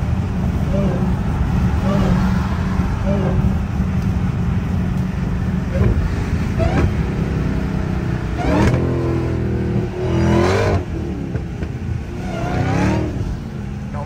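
Dodge Charger SRT Hellcat's supercharged V8 heard from inside the cabin, droning steadily at freeway cruising speed. A voice comes over it a few times in the second half.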